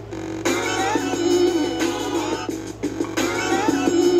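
Music playing from a CD on a Sony CFD-S50 boombox, heard from its speakers. The fuller sound of the track thins out briefly at the start and again about three seconds in.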